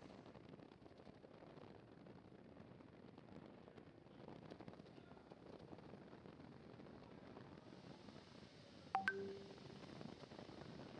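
Near silence: a faint, steady hiss from the launch-pad audio feed. About nine seconds in comes a short click followed by a brief tone.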